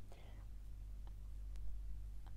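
A pause in the speech: a faint breathy voice sound just after the start, a single small click about one and a half seconds in, and a steady low hum underneath.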